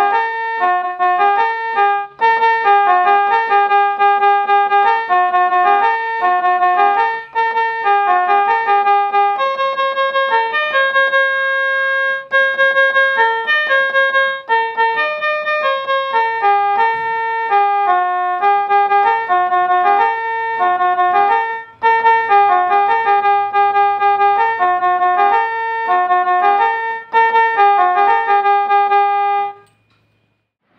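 Bigfun BF-630A1 toy electronic keyboard played through its built-in speaker on its trumpet voice (tone 08): a quick single-note melody with one long held note about eleven seconds in. The playing stops just before the end.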